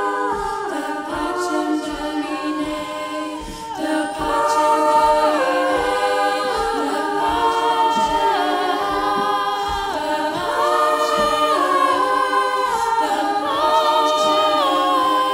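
Women's choir singing a cappella in sustained close harmony, the chords shifting in steps. The voices dip briefly a little under four seconds in, then swell louder.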